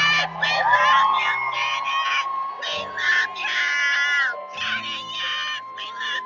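Live concert heard from the crowd: a singer holds one long note over the music while fans scream and sing along around the phone.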